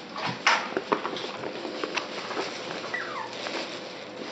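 West Highland White Terrier puppies at play, with a few short sharp sounds in the first second and a short falling whimper about three seconds in.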